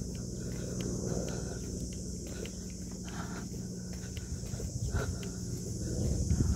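Footsteps on a hard paved path, scattered short clicks, over a steady low rumble of wind on the microphone and a steady high-pitched insect drone.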